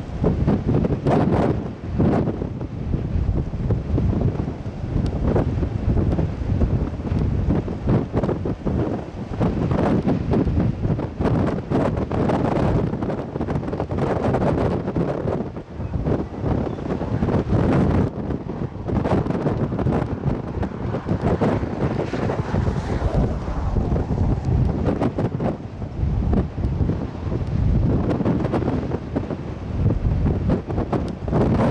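Strong, gusty wind buffeting the microphone: a continuous low rumbling rush that swells and eases with each gust.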